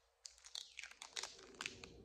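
Clear plastic candy wrappers crinkling faintly as two individually wrapped fruit jellies are handled, a run of irregular small crackles starting about a quarter second in.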